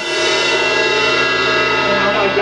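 Garage-band jam music: after a run of drum hits, a dense chord rings on steadily at an even level.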